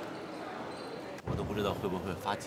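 Steady background murmur, then a man starts speaking about a second in.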